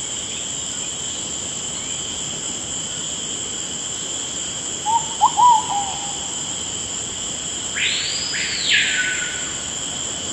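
Steady high, insect-like trill like a night-time cricket chorus. About halfway there is a quick run of short chirps, and near the end a single whistle that rises and then falls.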